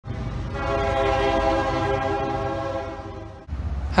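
Train horn sound effect: one long, steady multi-note horn chord over a low rumble, fading a little and then stopping about three and a half seconds in.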